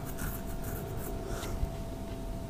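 Faint scratchy rubbing and a soft knock about one and a half seconds in, over a steady low electrical hum: a computer mouse being moved and clicked near the microphone.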